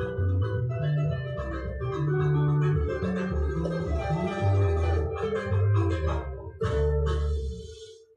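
Electric bass and electric guitar playing together, the bass moving through sustained low notes under the guitar's lines. A sharp accent hits about six and a half seconds in, then the music stops just before the end, leaving one note ringing out briefly.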